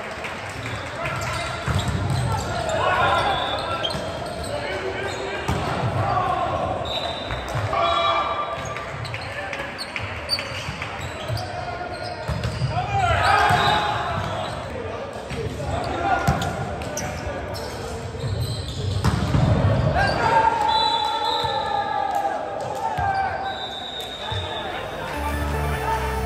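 Indoor volleyball rallies in a large gym: players shouting calls and cheers, with short smacks of hands on the ball throughout. The shouting peaks as each point ends.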